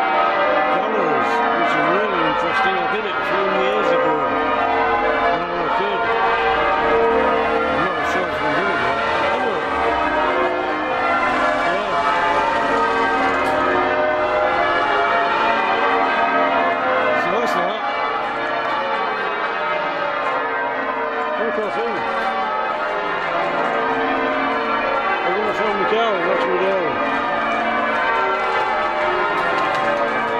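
Church bells of York Minster change ringing: a continuous peal of many overlapping bell tones.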